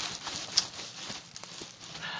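Clear plastic film on a diamond painting canvas crinkling and crackling as the canvas is shifted by hand, with one sharper crackle about half a second in.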